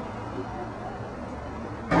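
Low street ambience with faint background voices, jumping suddenly to much louder street noise near the end.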